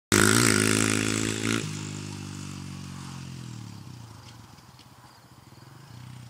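Honda CRF100 dirt bike's small single-cylinder four-stroke engine revving hard, then dropping suddenly to a lower, quieter note about a second and a half in. The engine then runs on steadily while fading away.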